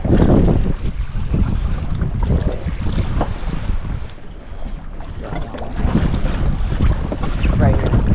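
Wind buffeting the microphone as a rough, gusting rumble, with sea noise around the boat; the rumble eases briefly about four seconds in.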